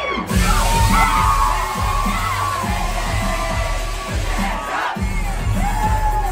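Loud dance-pop music with a heavy bass beat played over a club sound system, with a crowd cheering. The bass drops out briefly right at the start, with a falling sweep, and again near the end.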